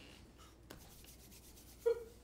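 A quiet pause on stage with faint rustling and a few small clicks, then one short, louder sound just before the end.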